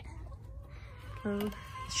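Laying hens in a nest box clucking softly, with one short cluck about a second and a half in over a faint drawn-out call.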